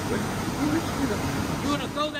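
Steady, loud noise of rice-milling machinery running, with voices talking indistinctly under it.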